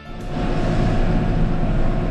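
Case IH tractor's diesel engine running, heard from inside the cab: a steady drone with a low rumble and a held whining tone, rising in just after the start.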